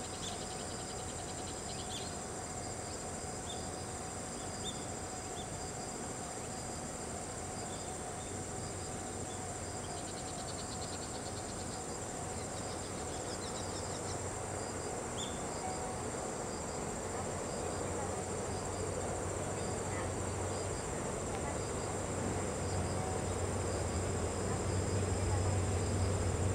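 Crickets chirping steadily at a high pitch. Over the last few seconds a low rumble grows louder as the Series 87 diesel-electric train approaches.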